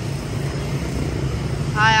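A steady low engine hum, like nearby motor traffic, with a voice calling out near the end.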